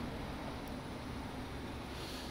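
Quiet outdoor background: a faint, steady low rumble with no distinct event.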